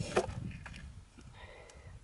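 Quiet handling sounds, a few faint light clicks, as a small fly packet is picked up, over a low rumble of wind on the microphone that fades away.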